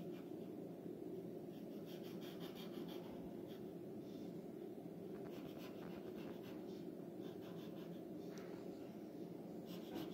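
Pencil scratching on drawing paper in several short runs of strokes, over a steady low hum.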